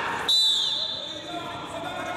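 Referee's whistle: one sharp, high blast about a third of a second in, lasting about a second, signalling the wrestlers to resume. Background chatter in the hall continues underneath.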